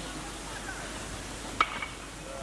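Baseball bat striking a pitched ball about one and a half seconds in: a single sharp ping with a short metallic ring, over steady outdoor background noise.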